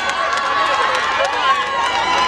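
A large crowd shouting together, many voices overlapping.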